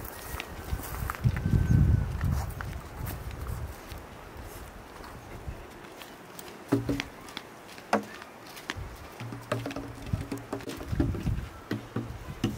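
Footsteps of a person walking on a dirt footpath, with scattered knocks and clicks. A low rumble comes about a second in, and faint low pitched sounds are heard in the second half.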